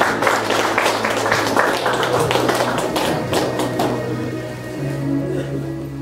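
A small crowd clapping over sustained keyboard chords. The clapping thins out and stops about four seconds in, and the held keyboard notes carry on.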